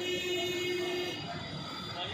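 A vehicle horn sounds one steady note for about a second, then stops.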